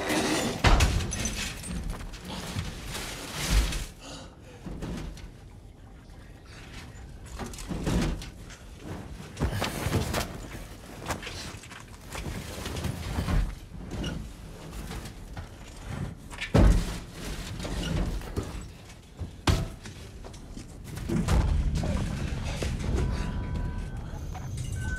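Film sound effects: irregular heavy thuds and bangs over a rumbling noise bed, with the loudest hits about a second in and again about two-thirds of the way through.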